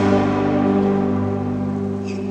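Church music in a large, echoing nave: a held chord of steady sustained tones slowly dying away.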